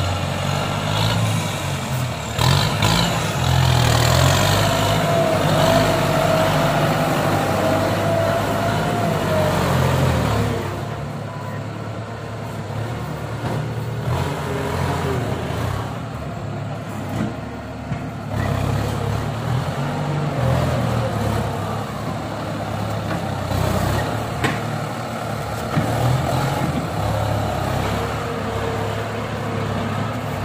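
Diesel farm tractor engine working under load in mud, with a thin whine over it for the first several seconds. About ten seconds in, the sound drops in level and turns to a steadier, lower engine sound.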